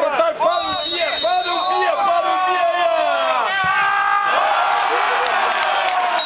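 Several men's voices shouting over one another, with a referee's whistle blowing a steady high note from about half a second in for over a second. Long, drawn-out yells follow in the second half.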